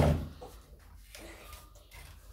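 A single sharp plastic clunk as a vacuum cleaner's wand pipe is pushed onto its hose handle, at the very start; after it the vacuum stays switched off and only faint handling is left.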